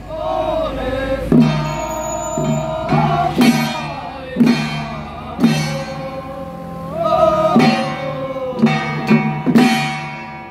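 Taiwanese xiaofa ritual troupe chanting a sung incantation in long, gliding notes, with a small studded hand drum struck about once a second, somewhat unevenly.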